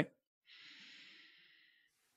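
A man's soft breath, a faint sigh lasting about a second.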